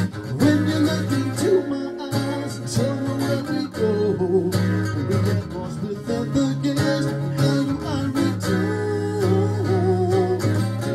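Acoustic guitar playing an instrumental passage of a live pop-rock song, amplified through PA speakers, with steady chords over a sustained low bass note.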